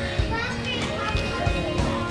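Quiet store background: faint music with distant voices.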